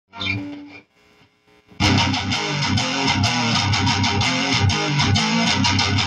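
Electric guitar, Stratocaster-style: a short note near the start, a brief pause, then from about two seconds in a fast riff of rapidly picked notes.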